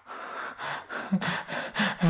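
A man gasping and panting hard: about six quick breaths in a row, the later ones with some voice in them.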